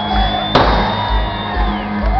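A live rock band playing a disco-rock song, recorded from the audience: a steady kick-drum beat about twice a second under a long held high note. A single sharp crack cuts through about half a second in.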